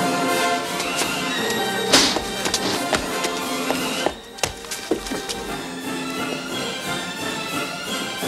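Orchestral music with held string notes, with a sharp loud accent about two seconds in.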